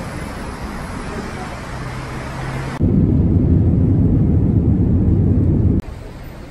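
Wheeled suitcases rolling along a sidewalk amid traffic noise, then about three seconds in a much louder, steady low rumble that cuts off abruptly near the end.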